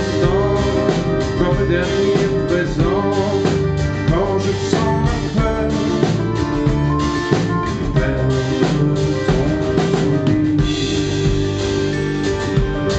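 Live band playing an instrumental passage on acoustic guitars, double bass, accordion and drum kit, with a steady drum beat.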